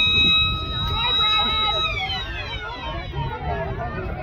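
Sports-ground siren sounding the end of play: one long steady high tone that winds down in pitch over the next two seconds from a little under two seconds in.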